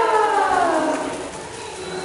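A drawn-out wordless vocal sound that glides steadily down in pitch over about a second and a half, then fades.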